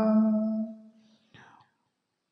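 A male priest chanting a Sanskrit mantra holds the final syllable in one long steady note that fades out within the first second. After that it is quiet apart from a brief faint breathy sound.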